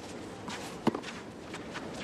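Tennis rally on a clay court: a racket strikes the ball once, sharply, about a second in, amid fainter scuffs and clicks of the players' footwork.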